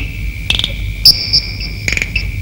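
Crickets chirping as night ambience: a steady high trill throughout, with sharper, higher chirps coming in about half a second and a second in, over a low steady hum.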